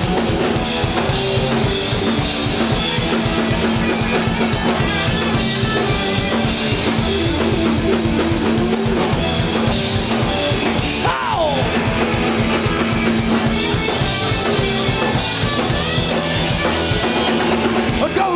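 Live punk-tinged hard rock band playing an instrumental passage: distorted electric guitars over a driving drum kit and bass, with a short sliding note about eleven seconds in.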